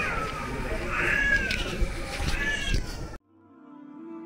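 A cat meows three times, each call a short arched wail, over busy background noise. Just after three seconds the sound cuts off abruptly and soft background music with long held notes fades in.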